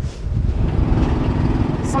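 Small utility-vehicle engine of a John Deere Gator running steadily as it drives across grass.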